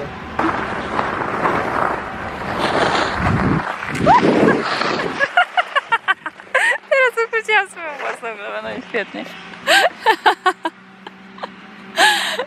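A woman laughing and squealing in short, rapid bursts while skiing, after several seconds of steady rushing noise from skis sliding on snow and wind on the microphone.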